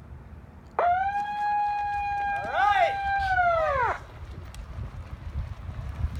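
A siren sounding once as a race's start signal in place of a starting gun that would not fire: a steady tone for about three seconds that sags in pitch as it cuts off. Voices shout over the second half of it.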